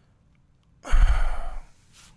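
A man's sigh, one long breath blown out close into a studio microphone, starting about a second in and lasting under a second, with a low rumble of breath hitting the mic.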